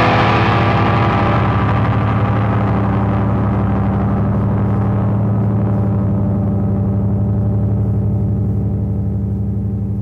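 A distorted electric-guitar chord left ringing at the end of a grunge song after the last hits, held steady while its bright high end slowly dies away.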